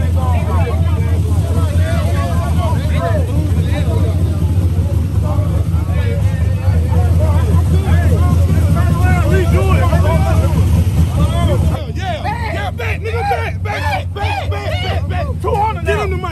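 A car engine idling with a steady low rumble under a crowd of men talking over one another; the rumble cuts off suddenly about twelve seconds in, leaving only the voices.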